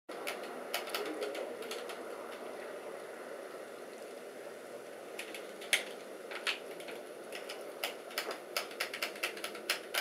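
Buttons of a handheld game controller clicking in quick, irregular presses, coming more often in the second half, over a faint steady room hiss.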